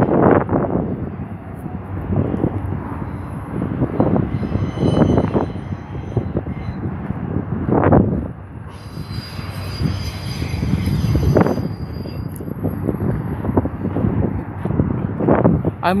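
BNSF intermodal freight train passing close by: a steady rumble of wheels on rail that swells and eases every couple of seconds, with faint high-pitched squealing now and then in the middle.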